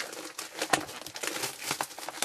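Plastic shrink wrap being torn and crumpled off a sealed box of trading cards, a dense run of irregular crackles.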